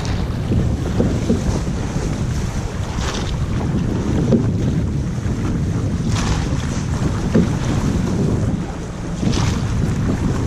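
Wind buffeting the microphone over water rushing along the hull of a llaut being rowed, with a swish from the crew's oars about every three seconds.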